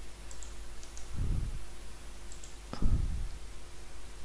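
A few light computer mouse clicks, with a couple of dull low knocks and a faint steady hum underneath.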